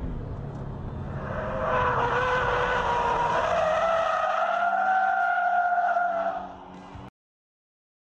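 Toyota GT86 on a race track: a low engine rumble, then from about a second and a half in a long, slightly wavering tyre squeal as the car slides through a corner. The squeal fades near the end, and the sound cuts off abruptly about seven seconds in.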